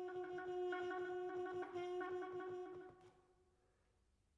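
Trumpet holding one long low note, its upper overtones shifting in quick flutters, then fading out about three seconds in.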